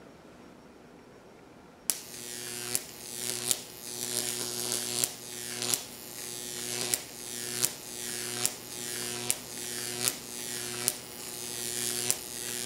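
Jacob's Ladder high-voltage arc starting about two seconds in: a steady electrical buzz and hiss from the 15-kilovolt arc between two wire antennae. A sharp snap comes a little more than once a second as the arc strikes again at the narrow bottom gap, then climbs the antennae until it breaks up and resets.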